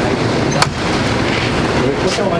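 Loud, steady rushing noise of wind buffeting the microphone, with one sharp click a little over half a second in as the wooden restaurant door's handle and latch are worked and the door pulled open.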